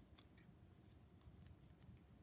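Near silence with a few faint metallic clicks, about three in the first second, as a small 1-64 tap is handled and set into a tap handle.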